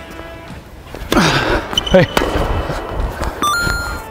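A tennis ball struck hard with a racket about two seconds in, followed by a second sharp knock, just after a falling, voice-like exclamation. A short electronic chime stepping up in pitch sounds near the end.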